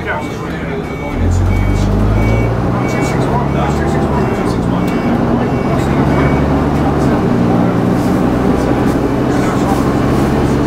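Leyland Titan double-decker bus's diesel engine heard from inside the lower deck. It picks up about a second in as the bus pulls away and then runs steadily under load. A short high beep repeats through the first half.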